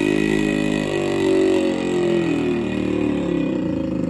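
Yamaha RX100's two-stroke single-cylinder engine revving under load while it tows a tractor backward on a rope, its pitch rising and falling with the throttle.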